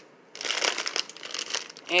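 Plastic bag of a Caesar salad kit crinkling as it is grabbed and lifted: a dense run of small crackles that starts about a third of a second in and goes on for about a second and a half.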